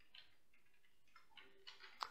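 Near silence with a few faint clicks from a computer keyboard and mouse as text is selected in the code editor.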